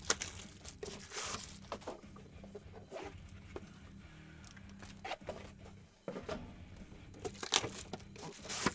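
A cardboard trading-card box being unwrapped and opened by hand: intermittent tearing and rustling of the wrap, with light taps and scrapes as the lid is lifted.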